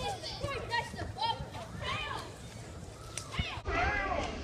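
Children's voices calling and shouting during an outdoor ball game, with a single thud a little before the end.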